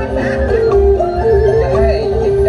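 Dù kê folk-theatre singing: a woman sings long, wavering held notes into a microphone over an amplified traditional ensemble with a steady drum beat.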